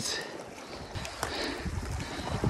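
Wind rumbling on the microphone over a steady wash of sea, with a faint tick about a second in.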